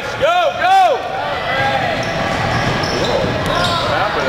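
Basketball sneakers squeaking on a hardwood gym floor: two loud, sharp squeaks in the first second, then fainter squeaks over the general noise of the gym.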